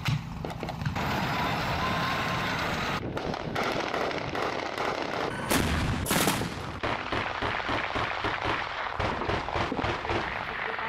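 Gunfire from a heavy automatic gun mounted on a truck bed. Two loud bursts come about five and a half and six seconds in, followed by a quick run of repeated shots.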